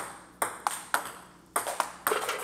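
Table tennis balls bouncing on the table and being hit with a paddle: about six sharp, hollow clicks in quick, uneven succession.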